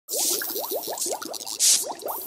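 Logo intro sound effect: a quick run of bubbly plops, short rising blips about six a second, over a hiss, with a louder whoosh of hiss near the end.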